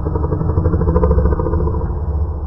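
Experimental industrial noise music: a heavy low rumble under a rapid buzzing, clattering pulse, like a distorted engine.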